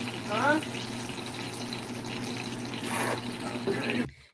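Burgers sizzling in a frying pan: a steady hiss over a low steady hum, with a brief voice about half a second in.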